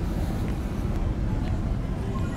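Casino floor background din: a steady low rumble with no clear voices or machine tones standing out.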